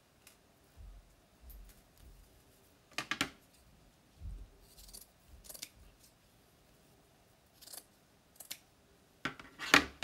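Scissors cutting burlap ribbon: several short separate snips with quiet handling between them, the loudest cluster near the end.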